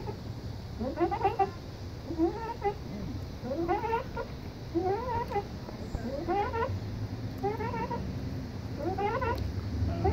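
Playground swing's chain fittings squeaking with each swing, a rising, meow-like squeal about once a second.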